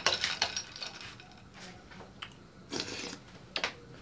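Long metal bar spoon scraping and clinking against a glass bowl as it scoops soft durian flesh: a run of clicks and scrapes at first, then a few short, fainter ones.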